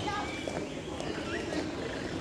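Faint background voices mixed with a few short, high bird calls, one rising chirp about halfway through.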